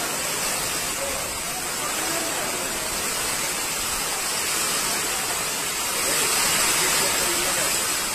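Heavy rain pouring down with floodwater rushing through a street: a steady, dense hiss that swells slightly about six seconds in.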